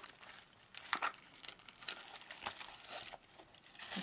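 A small handbag being handled and opened: its metal push-lock clasps click, with a sharp click about a second in and another near the middle, among light rustling and knocks as the flap is lifted.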